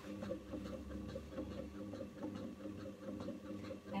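Zen Chi oxygenator (chi machine) running: its electric motor swings the ankle cradle side to side with a steady hum and a fast, even rattle.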